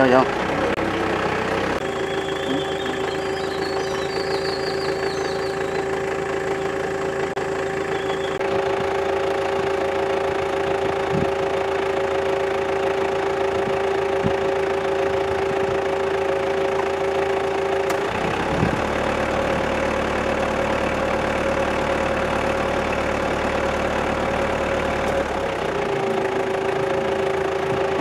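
A vehicle engine idling steadily. Its tone shifts about two-thirds of the way through and settles back near the end.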